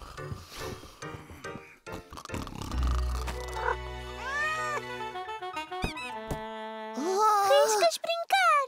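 Cartoon background music, with a cat meowing twice: once in the middle and once near the end.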